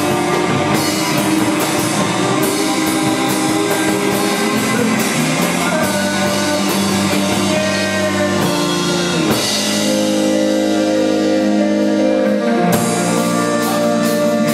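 Live rock band playing: electric guitars ringing out sustained chords over drums. The drums drop out for a few seconds past the middle, leaving the guitars ringing, then come back in near the end.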